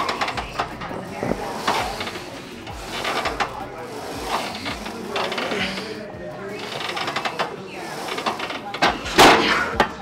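A man breathing hard through a set of single-leg leg presses, with heavy exhales and strained grunts coming every second or two as he pushes each rep, the strongest one near the end.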